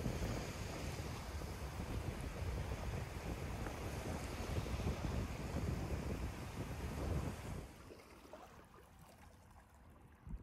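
Small lake waves washing onto a sandy shore, with wind buffeting the microphone; the sound drops to a quieter hush after about eight seconds.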